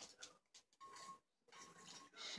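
Faint sipping through a straw from a metal tumbler, with a thin tone that comes and goes in the second half.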